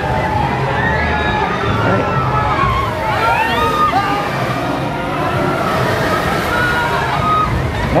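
Riders on a spinning thrill ride yelling and screaming, several voices overlapping and gliding up and down in pitch, one sounding really scared, over a steady low rumble.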